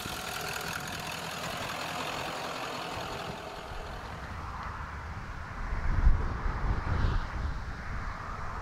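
A pickup truck towing a flatbed trailer drives by, its engine and road noise fading over the first few seconds. In the second half, gusts of wind buffet the microphone in uneven low rumbles.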